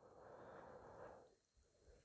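Near silence, with a faint soft noise in the first second.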